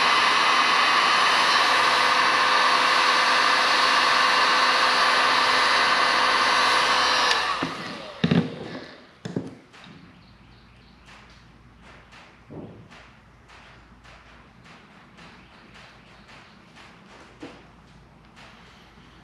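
Handheld electric heat gun running steadily, a fan whir and hiss with a few steady tones, heating a piece of ABS plastic sheet to soften it. After about seven seconds it is switched off and winds down. Then come a few soft knocks and faint clicks as the plastic piece is worked with pliers.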